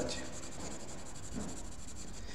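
A 2H graphite pencil shading on paper: a quiet, steady scratching as the hard lead lays down a light tone along a drawn line.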